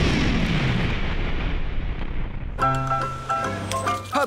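A title-sting ends on a boom-like crash that dies away over about two and a half seconds, and then new background music starts.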